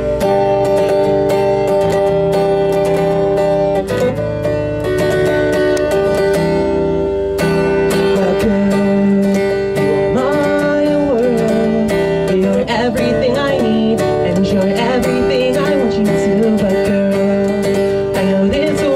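Acoustic guitar strummed in a steady rhythm as a song's intro, with a man's singing voice coming in around the middle.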